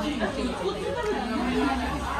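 Indistinct chatter of several overlapping voices, no single voice standing out, over a steady low hum.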